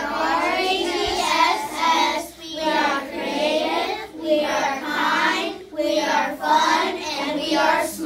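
A group of children chanting the school mission statement together, phrase by phrase: "At RHESS, we are creative, we are kind, we are fun, and we are smart."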